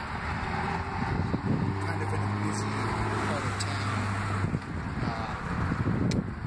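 A motor vehicle engine running nearby with a steady low hum. The hum fades out about four and a half seconds in.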